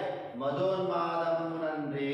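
A man's voice chanting lines of Telugu verse in a slow, sung recitation, holding long notes.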